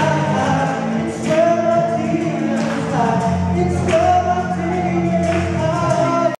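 A man and a woman singing a duet into handheld microphones over musical accompaniment.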